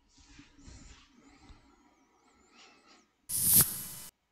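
Faint background noise, then about three seconds in a loud, short hiss of breath close to the microphone, just before the narrator speaks again.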